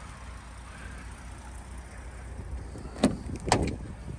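Rear door of a Lincoln Nautilus SUV being opened: two sharp clicks about half a second apart near the end, as the handle is pulled and the latch releases, over a steady low rumble.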